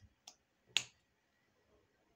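A faint short click, then a single sharp click just under a second in; low room noise otherwise.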